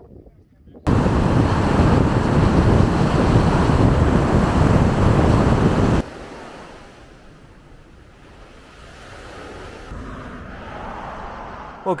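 Loud, steady rush of wind over the microphone while driving along a road, starting suddenly about a second in. It cuts off abruptly about six seconds in, leaving a much quieter, steady rush of open-air wind.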